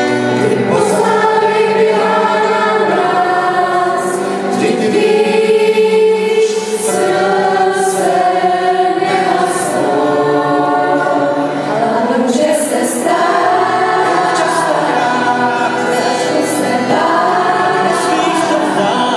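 A group of young women singing together in chorus, accompanied by strummed guitars.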